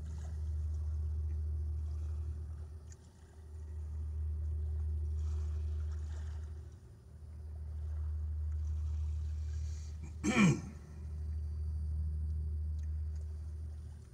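A man clears his throat once, sharply, about ten seconds in, reacting to the ghost-pepper bite at the back of his throat. Under it a low rumble swells and fades every three to four seconds.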